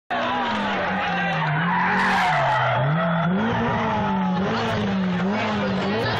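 Rally car engine approaching at racing speed, its pitch rising and falling several times as the driver works the throttle and gears.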